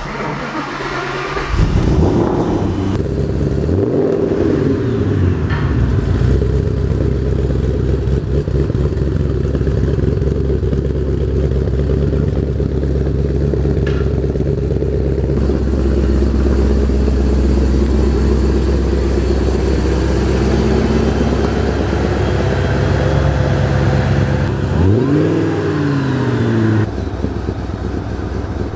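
Shelby GT500's supercharged 5.4-litre V8 starting up after sitting unused for a while. It catches just under two seconds in, is revved up and back down, then idles steadily, with one more rev rising and falling near the end.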